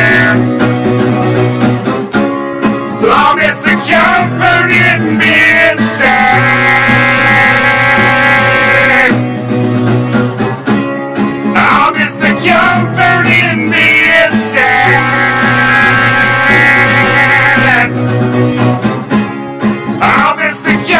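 Acoustic guitar music: an instrumental passage of a song cover, with guitar chords under long held melody notes.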